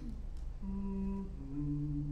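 A man humming two held notes, a higher one and then a lower one, to set the starting pitch before leading an unaccompanied hymn.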